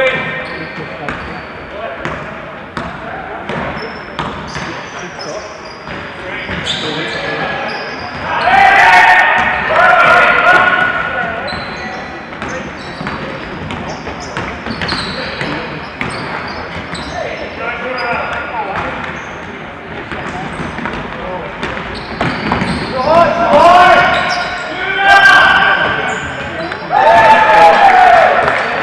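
A basketball game being played: a ball bouncing on the court with short knocks throughout, and players' voices calling out, loudest about eight to eleven seconds in and again near the end.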